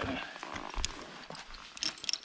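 Climbing gear clicking and rustling as a climber works his harness hardware and rope ascender while stepping up onto the rope: a few sharp clicks about a second in and a small cluster near the end, with a dull knock just before the first click.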